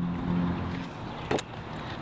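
A car engine running on the street, a steady hum that fades about halfway, followed by a single sharp click.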